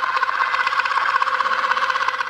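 Spherificator caviar maker's small motor running with a steady whirring buzz as it drips coffee into the calcium water bath.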